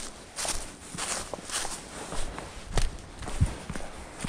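Hiker's footsteps on a dry, leaf-covered rocky forest trail, at a steady walking pace of about two steps a second, with small sharper clicks from stones underfoot.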